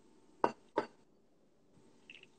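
Two short clinks of kitchenware, about a third of a second apart, with near quiet around them.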